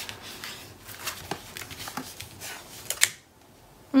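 Cardstock flaps of a paper mini-album page rustling and sliding against each other as they are folded and handled, binding a little, with a sharp click about three seconds in as a flap comes shut.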